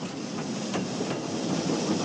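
Coal mine rail car rolling on its track underground: a steady clattering rumble with a few sharp clicks.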